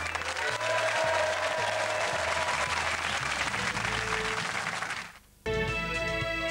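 Studio audience applause over upbeat music with a repeating bass line, both fading out about five seconds in. After a brief silence, new music starts just before the end.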